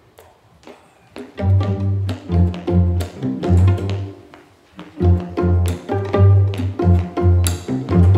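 A string quartet of two fiddles and two cellos starting a tune: a few faint taps, then from about a second and a half in a rhythmic groove with strong, repeated low notes under the fiddles.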